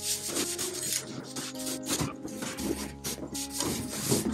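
A tall cardboard appliance box scraping and rubbing against the floor in a series of short, uneven scrapes as it is tilted and walked along. Background music plays underneath.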